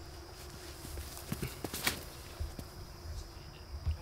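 Quiet outdoor background with a faint steady insect drone, broken by a few light taps and clicks, mostly in the middle.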